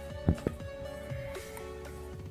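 Background music with two sharp metal clicks close together near the start, from the pad-retaining clip and pin being fitted into a front disc brake caliper.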